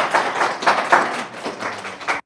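Audience applauding, a dense run of hand claps that tapers slightly near the end.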